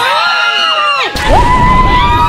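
A person screaming: a long, high-pitched scream that breaks off about a second in, then a second held high scream, over background music.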